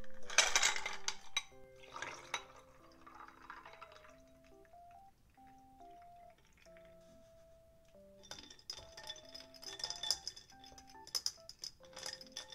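Ice cubes clattering into a glass, with a second rattle of ice about two seconds in. From about eight seconds in, a long spoon stirs the ice in the glass with rapid light clinking, over soft background music.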